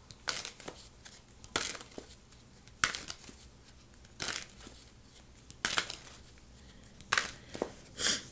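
A tarot deck being shuffled by hand, the two halves of cards snapping together in about six short, sharp bursts, roughly one every second and a half.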